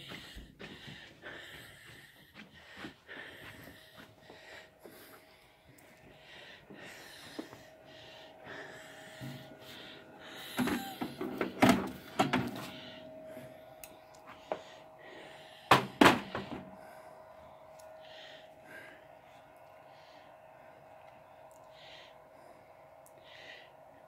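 Scattered knocks and thunks of handling and moving about, with a few louder thunks near the middle and again about two-thirds of the way through, over a faint steady hum.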